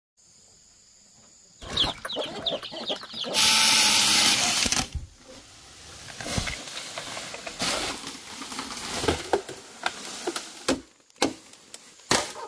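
A hen clucking in short calls, then a loud burst of a chainsaw cutting through bamboo, followed by rustling and a few sharp chopping knocks near the end.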